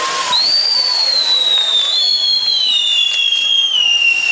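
A burning castillo fireworks tower: a steady fizzing hiss of spinning spark wheels, with two high whistles. The first starts about a third of a second in, the second about two seconds in, and each slowly falls in pitch.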